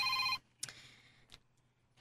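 A telephone ringing with a steady electronic ring that cuts off about half a second in. It is followed by a click and a brief faint rustle as the phone is answered.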